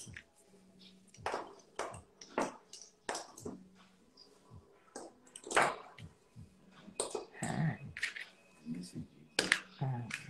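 Scattered light clicks and taps of nail-art tools and small product bottles being picked up and set down on a work table, at an irregular pace.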